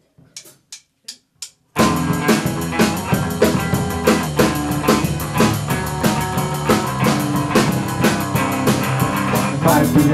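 A live rock band starting a song: four sharp clicks count in, then drum kit and electric guitar come in loud together just under two seconds in, with a steady driving beat.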